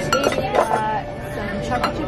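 Dishes and glassware clinking on a table: a few sharp clinks, one near the start, one about half a second in and one near the end, over voices in the background.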